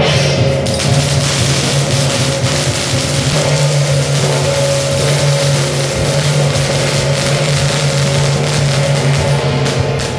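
Temple procession percussion: drums with gongs and cymbals clashing continuously in a dense, loud wash over a steady low hum.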